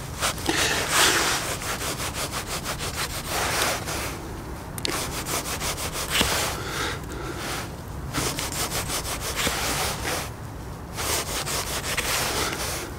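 Schrade SCHF37 survival knife cutting with quick back-and-forth sawing strokes, in several bursts separated by short pauses.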